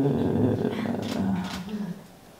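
A woman's voice drawn out in a low, gravelly, hesitant "euh" sound, with no clear words, fading away near the end.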